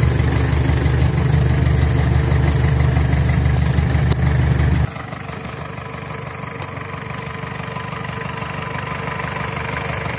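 Mahindra CJ500 jeep engine idling in first gear and four-low, pulling the jeep along at a crawl with no accelerator given. It is loud and close at first, drops suddenly just before halfway, then grows slowly louder as the creeping jeep comes nearer.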